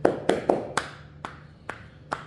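Hands striking in six quick, unevenly spaced sharp claps or slaps, loudest at the start.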